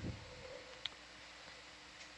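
Faint steady hiss of room tone, with one short tick a little before the middle.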